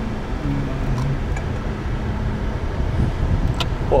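Steady low rumble of a car's engine and tyres heard inside the cabin while driving.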